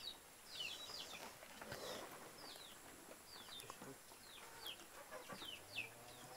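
A small bird calling faintly in the background: a steady series of short, high chirps, each sliding downward in pitch, about two a second.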